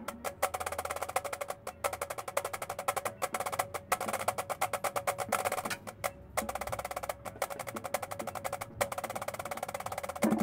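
Marching snare drums played in a soft, fast passage of rapid, even stick strokes, broken by a few brief pauses, with no bass drums or tenors under it.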